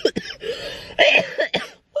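A man coughing: short rough coughs, the loudest about halfway through, dying away before he speaks again.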